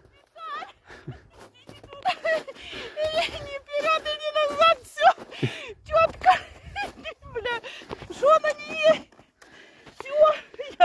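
People talking: voices speaking in short, high-pitched bursts throughout, with no other clear sound.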